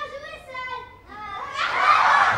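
A children's chorus sings a short phrase, then about a second and a half in breaks into a loud burst of many children shouting at once.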